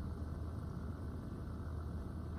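A faint, low, steady hum with no distinct events.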